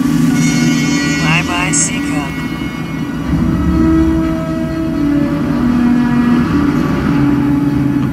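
Film soundtrack: held orchestral music notes over the steady drone of B-17 bomber engines, with a short voice about a second in.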